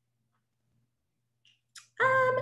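Near silence, with a brief faint noise near the end.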